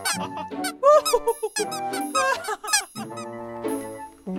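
A rapid run of high, wavering squeaks, several a second and rising and falling in pitch, with short pauses, over background music.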